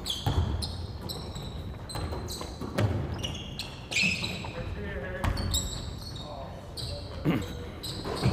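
Basketball being dribbled and passed on a hardwood gym floor, with repeated knocks of the ball and short high squeaks of sneakers as players cut and stop, echoing in the large gym.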